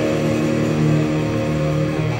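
Electric guitars of a live punk rock band holding one sustained, ringing chord, the closing chord of the song.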